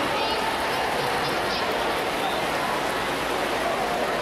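Steady wash of noise in an indoor swimming pool hall: swimmers splashing through backstroke, blended with the echoing hum and murmur of the natatorium.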